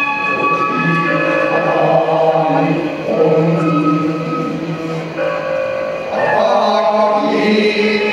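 Men chanting shigin (gin'ei, sung Japanese recitation of poetry) in long, held, wavering notes that slide between pitches. A steady instrumental accompaniment sustains beneath the voices.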